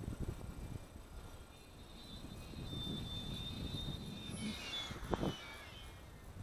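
High whine of an electric RC airplane's motor and propeller on a 5S LiPo pack as the plane flies past: the tone swells from about a second and a half in, then drops in pitch as it passes and fades near the end. Under it runs a low rumble of wind on the microphone, with a short knock about five seconds in.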